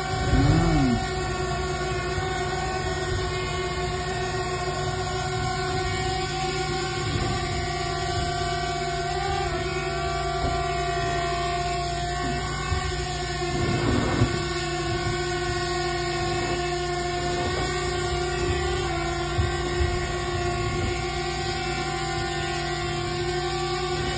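Small drone's propellers humming steadily as it hovers, with the pitch shifting slightly now and then as its thrust is corrected to keep it down against an air current. A brief rustle comes about halfway through.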